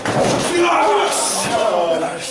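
A wrestler's body crashing into his opponent in the ring corner, one heavy slam right at the start, followed by voices.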